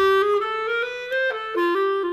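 Unaccompanied jazz clarinet playing a phrase of short notes that climb in pitch, then settling into a long held note near the end.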